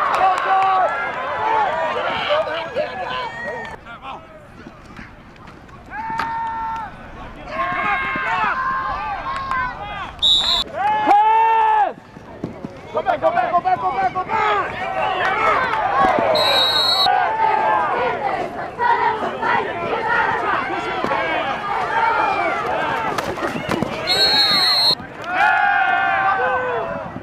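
Spectators and players shouting and cheering, many voices overlapping, with a loud single shout about eleven seconds in. Three short, high referee whistle blasts sound through it, at about ten, sixteen and twenty-four seconds in.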